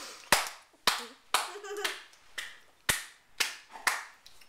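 Hands clapping: about eight sharp claps at an even pace, roughly two a second.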